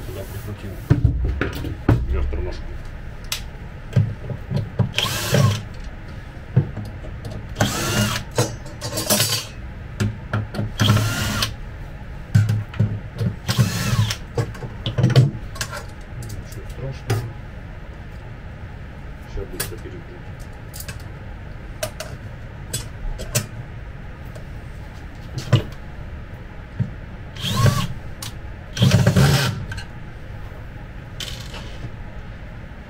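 Cordless drill-driver whirring in several short bursts, driving screws into laminated chipboard furniture panels. Between the bursts come knocks and clatter of the panels being handled.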